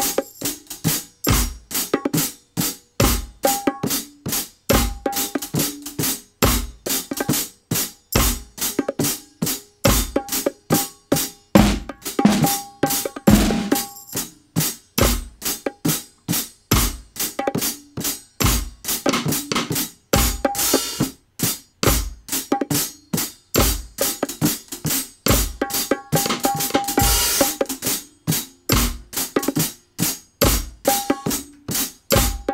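Reggae drum groove with a steady kick drum, snare and fast, evenly spaced hi-hat ticks, plus a short cowbell-like tone that recurs every second and a half or so.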